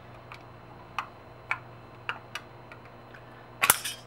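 Light clicks and taps of a thin aluminium soda-can diaphragm disc being test-fitted inside a PVC horn body: a few scattered ticks, then a louder cluster of sharp clicks near the end, with a low steady hum underneath.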